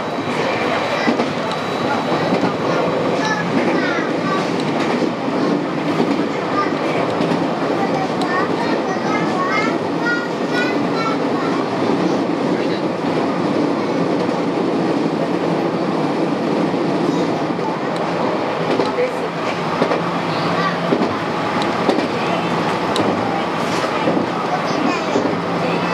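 JR West 223 series electric train running along the line, heard from the cab: a steady rolling rumble of wheels on rail. A few brief high squealing glides come about three seconds in and again around ten seconds in.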